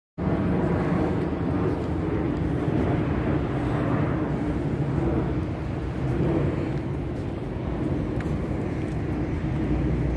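Steady low rumble of outdoor background noise, starting abruptly out of silence just after the start.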